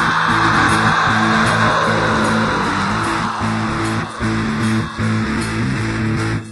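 An instrumental, guitar-led passage of a band's recorded song, without vocals, at a loud steady level with two short breaks late on.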